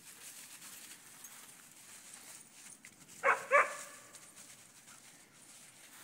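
A dog gives two quick barks, a little over three seconds in.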